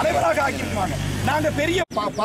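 Men talking, with a steady low engine-like hum, as from a vehicle idling, running beneath the voices. Near the end the sound drops out completely for an instant at an edit.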